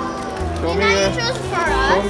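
Young children's high voices, talking and calling out, over background music with steady low notes.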